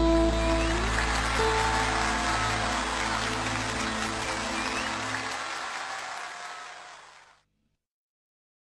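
Live concert audience applauding while the band's last notes die away; the sound fades and then cuts out about seven seconds in.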